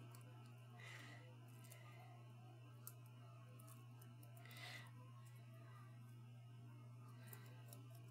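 Near silence: room tone with a steady low hum, and two faint rustles of paper cut-outs being handled, about a second in and again near the middle.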